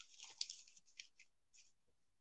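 Faint crinkling and crackling of folded newspaper as a hand hole punch is pressed through four layers of it, a quick cluster of crackles at the start followed by a few separate ones.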